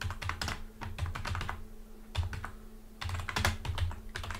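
Computer keyboard typing: runs of keystrokes in short clusters, with a couple of brief pauses midway.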